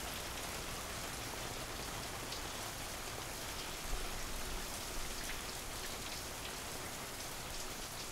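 Shower running: a steady spray of water hissing, with a couple of faint knocks about halfway through.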